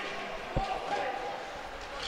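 A single sharp knock of a hockey puck about half a second in, with a brief ring after it, over steady ice-rink crowd noise.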